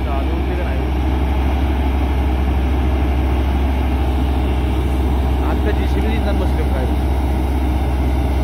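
Truck-mounted borewell drilling rig running: its diesel engine and air compressor hold a steady, deep drone with no change in pace.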